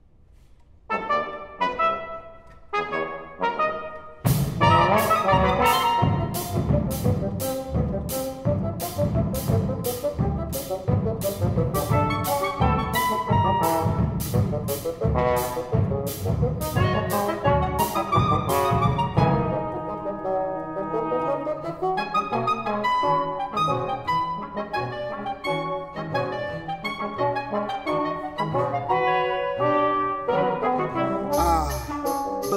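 Small chamber ensemble of trombone, clarinet, double bass and drum kit playing: a few short separate stabs, then from about four seconds in a loud driving passage over a steady drum beat, two to three strokes a second. The drums drop out about twenty seconds in while the brass and winds play on more lightly.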